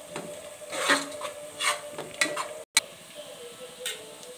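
Slotted spatula scraping and stirring sliced onions frying in oil in a metal pot, in several irregular rasping strokes: onions being sautéed towards golden. About two-thirds of the way in, the sound drops out for a moment and comes back with a sharp click.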